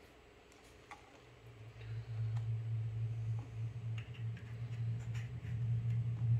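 Scattered small clicks and taps from handling a PVS-14 night vision monocular and its objective lens cap, over a low steady hum that comes in about two seconds in.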